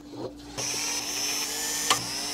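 Electric screwdriver running with a steady whine, starting about half a second in, as it drives screws out of a NAS chassis; a click near the end.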